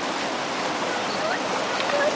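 Sea water washing and rushing around rocks at the edge of a rocky ocean pool: a steady, unbroken wash.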